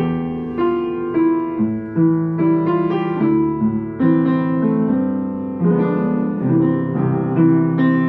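Yamaha U3M upright acoustic piano being played: chords with a melody in the middle register, a new chord struck every half second to a second. It is a little out of tune and due for tuning, as the player says.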